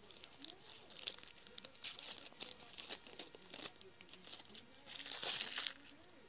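Tape being pulled off a roll, with scattered crinkling and crackling and a longer tearing rip about five seconds in.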